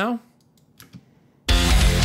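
A heavy metal mix starts playing abruptly about one and a half seconds in, its distorted rhythm guitars widened by a time-shifted, pan-swapped duplicate. Before it, near silence with a couple of faint clicks.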